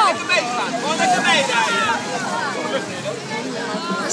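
Spectators at the trackside calling out and cheering to the passing skaters, several voices overlapping, over the steady rolling of inline-skate wheels on asphalt.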